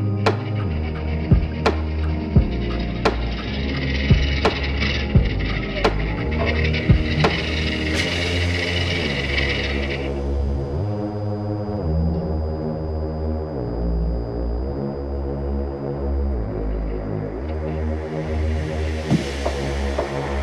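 Electronic dance music with a steady beat. A rising hiss builds and cuts off about ten seconds in, and sustained synth chords follow.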